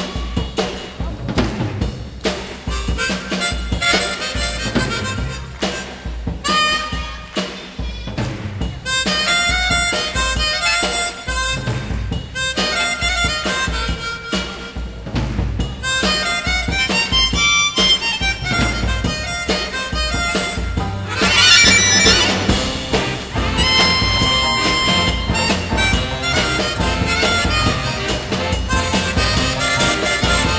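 Harmonica playing a soul-jazz melody over a live band's drums, in a live concert recording.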